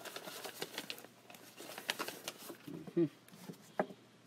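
Plastic bubble wrap crinkling and crackling in the hands as a new RV door handle is unwrapped, a run of irregular small crackles.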